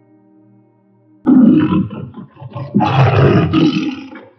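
Two tiger roars over faint background music: the first about a second in, the second longer, starting near the three-quarter mark.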